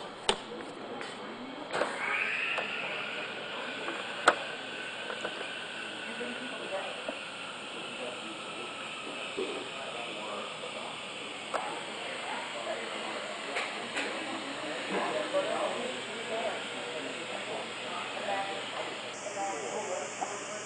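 An electric blower motor starts about two seconds in and keeps running with a steady rushing hiss and a faint whine that settles in pitch. Two sharp clicks come just after the start and about four seconds in, with faint voices in the background.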